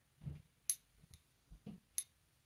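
Paintbrush working in a small plastic watercolour palette: a few light clicks and soft knocks as the brush mixes paint in a well and bumps the plastic. The sharpest clicks come about two-thirds of a second in and again at the end.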